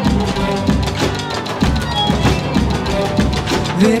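Band music: an instrumental stretch of a song with a steady drum-kit beat under bass and sustained notes, and a voice starting to sing right at the end.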